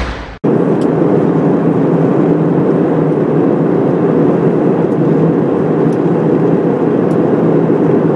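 Airplane cabin noise in flight: a steady, even rush of engine and air noise that starts suddenly just under half a second in.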